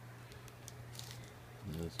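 Faint, scattered crinkles and taps of a black plastic-wrapped package being handled, over a steady low hum. A man starts to speak near the end.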